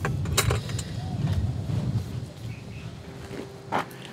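Low rumble and a few sharp clicks inside a car, as someone moves in the driver's seat; the rumble dies away after about two and a half seconds.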